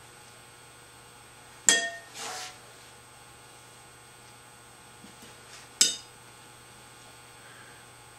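Two sharp metallic clinks about four seconds apart, each with a brief ring, from a metal cheese-cutter faceting tool worked against a leather-soft clay cylinder on the potter's wheel. A low steady hum runs underneath.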